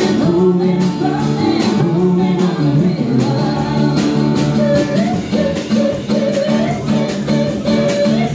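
Live band playing an instrumental passage on drum kit, electric bass and guitar, with a steady drum beat.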